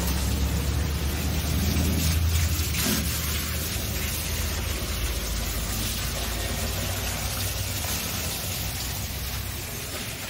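Motor pump humming steadily while its water jet hisses onto a combine harvester during washing; the low hum is strongest in the first few seconds, then eases.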